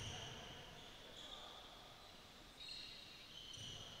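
Faint sounds of a basketball game on a hardwood gym floor: several high sneaker squeaks as players shift, and a soft low thud of the ball near the end.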